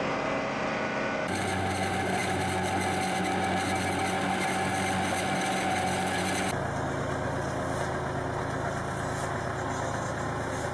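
Tractor engines and farm machinery running steadily, the sound switching abruptly twice as it changes from one machine to another. There is a steady whine in the middle stretch.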